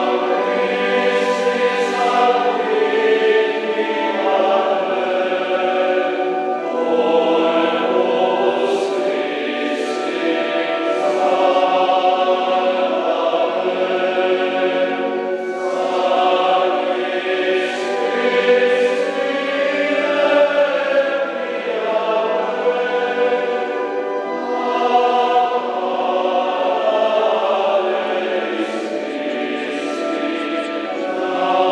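A men's church choir singing continuously in the cathedral, several voices holding sustained sung lines with the hiss of sung consonants showing now and then.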